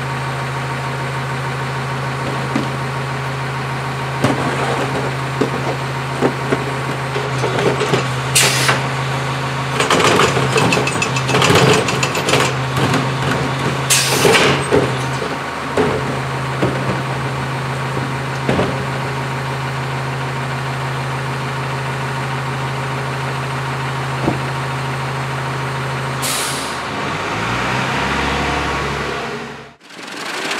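CCC rear-loader garbage truck idling steadily while carts are tipped into its hopper, with bursts of clattering bangs in the middle and short air hisses three times. Near the end the engine note drops.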